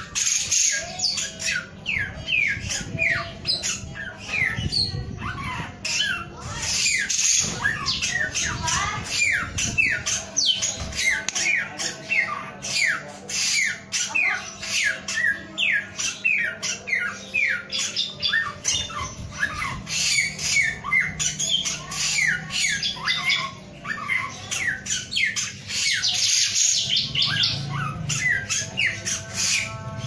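A caged male samyong, a leafbird, singing without pause: a fast, unbroken string of short, sharp notes, each sweeping down in pitch. A steady low hum runs underneath.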